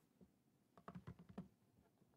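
Faint quick run of key clicks from a laptop keyboard being typed on, about a second in.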